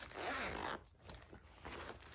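Backpack compartment zipper being pulled open: one long zip in the first part of a second, then a shorter, fainter zip near the end.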